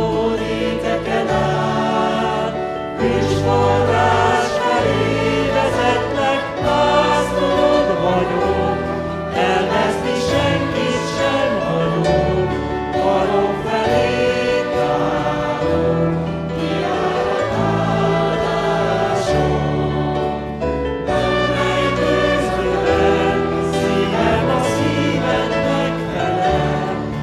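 A Christian worship song sung by a mixed group of men's and women's voices in chorus, accompanied by acoustic guitar and trumpet, with held low notes underneath.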